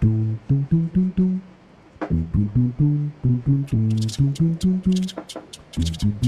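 Background music: a bass-heavy melody of plucked string notes, with a crisp ticking percussion coming in about halfway through.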